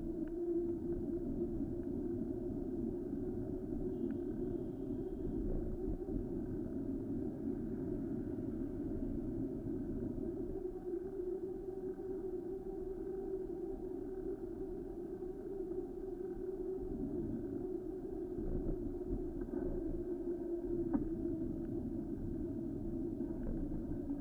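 Steady, muffled road and traffic noise heard from a bicycle-mounted camera while riding, a low even rumble with a few light knocks near the end.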